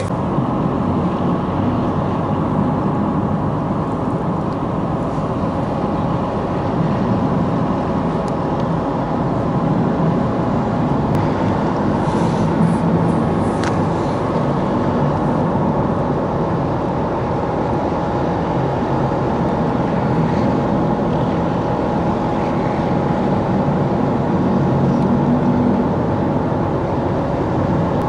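Steady, unbroken engine running noise with a constant hum from a car carrier being loaded with new cars up its stern ramp, with a couple of faint clicks about halfway through.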